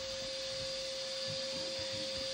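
A steady electronic hum, one pitch held throughout, over a faint hiss: background noise in the playback of a screen's speaker.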